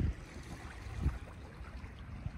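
Faint outdoor ambience beside open water: a low, uneven rumble with a light hiss, typical of wind on the microphone and small waves, with a brief faint sound about a second in.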